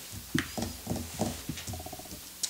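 Quiet, indistinct voices away from the microphones: short murmured syllables in a meeting room.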